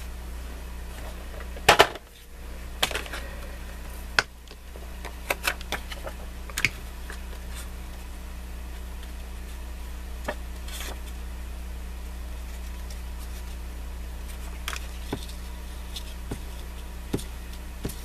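Paper and cardstock being handled and set down on a cutting mat: scattered light taps and clicks, the loudest a sharp double click about two seconds in, over a steady low hum.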